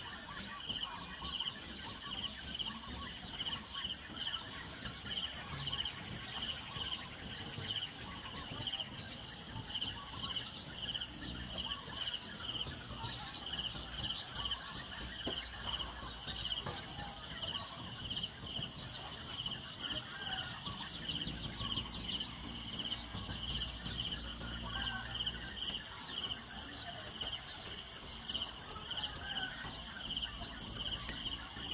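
Outdoor insect chorus: a steady high buzz with one insect chirping in an even rhythm, about two chirps a second, throughout. A few faint bird chirps lie underneath.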